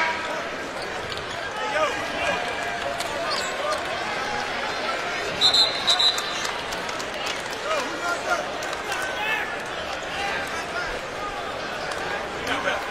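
Basketball arena crowd chattering and murmuring during a lull in play, with two brief high squeaks about halfway through.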